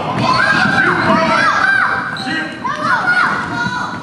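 Children's ball game on a gym floor: a ball bouncing, with repeated short high squeals that rise and fall, from sneakers and children's shouts, echoing in a large hall.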